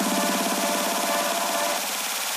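Electronic trance music playing back: a fast, evenly pulsing synth over sustained chord tones and a high hiss-like noise layer, the chord tones cutting off near the end.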